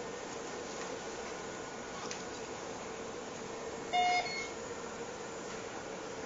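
A Medfusion syringe pump gives one short electronic beep about four seconds in, over a faint steady hum.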